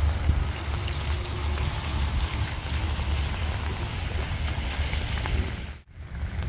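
Steady rain falling, with wind rumbling on the microphone; the sound cuts off suddenly just before the end.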